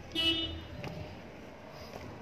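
Metal gate being unlatched and pushed open: a click, then a short high squeal about a quarter second in, and another click about a second in.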